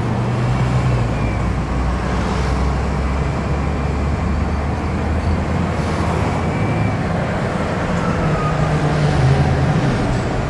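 A car driving, heard from inside the cabin: a steady low engine hum under tyre and road noise.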